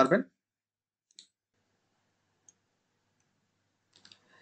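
Two faint computer mouse clicks, just over a second apart, in near silence; a man's last word ends just at the start.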